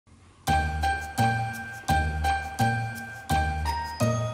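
Background music with bell-like tinkling notes over a deep bass pulse. It starts about half a second in, with a new strike roughly every 0.7 seconds.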